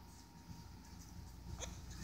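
Near silence: faint room tone, with one soft click shortly before the end.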